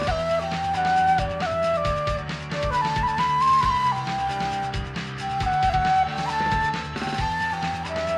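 Shinobue, a Japanese bamboo transverse flute (a Rippei no. 3), playing a J-pop melody in held, stepped notes that climb and fall. Tsugaru shamisen plucks and a recorded pop backing track with a steady drum beat play underneath.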